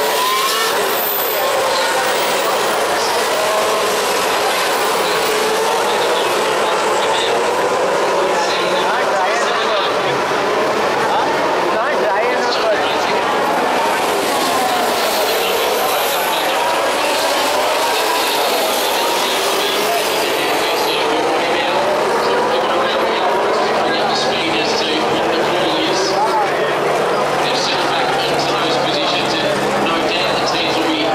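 Formula 1 cars' 1.6-litre V6 turbo-hybrid engines running around the street circuit, heard from the grandstand as a continual overlapping mix of engine notes rising and falling as cars pass and change gear, with voices underneath.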